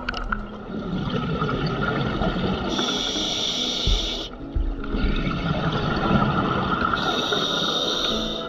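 Scuba diver breathing through a regulator underwater: two breaths about four seconds apart, each a long rush of gurgling air with a sharper hiss near its end and a short break between them.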